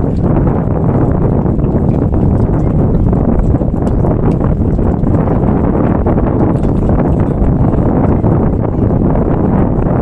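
Steady, loud wind buffeting the phone's microphone, a continuous low rumble with no pauses.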